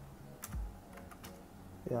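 A few separate keystrokes on a computer keyboard as a word is typed, each a short click with a soft low thud.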